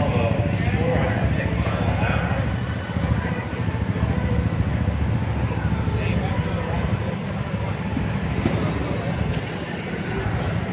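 Indistinct voices of people talking, over a steady low rumble.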